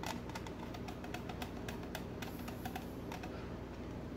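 Light, irregular clicks and ticks of a screwdriver turning a screw terminal on a plastic doorbell chime as a bell wire is tightened under it.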